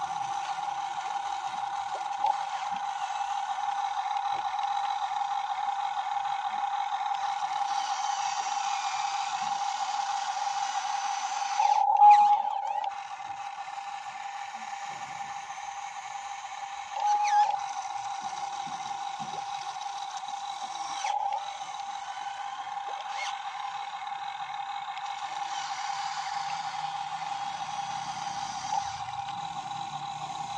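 RC model Hitachi 135US excavator's hydraulic pump running with a steady whine while the arm digs mud and swings the loaded bucket. The whine turns briefly louder and higher twice, about twelve and seventeen seconds in.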